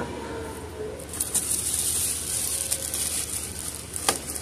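Clear plastic wrapping of bagged Christmas picks crinkling and rustling as it is handled, building about a second in and fading near the end.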